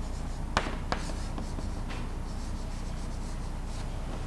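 Chalk writing on a blackboard: two sharp taps of the chalk about half a second and a second in, then faint scratching strokes, over a steady low background hum.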